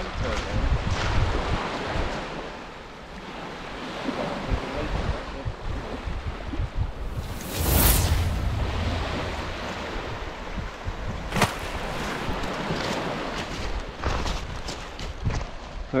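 Wind buffeting the microphone over waves washing onto a shingle beach, with one sharp whoosh about halfway through as a beach-fishing rod is swung through a cast, and a single click a few seconds later.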